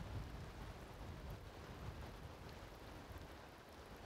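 Faint, steady rushing of a shallow, fast river current.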